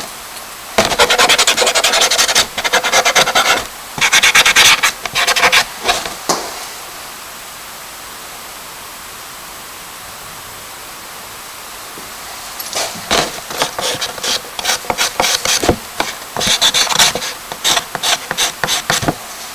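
Charcoal stick scratching and rubbing on a paper sketchbook page in quick, rapid strokes: two bursts early, a pause of about six seconds with only faint hiss, then fast strokes again from about two-thirds of the way in.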